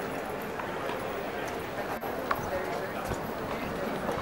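A tennis ball tapped a few times on racket strings, sharp pocks a fraction of a second apart, over a steady murmur of spectator chatter.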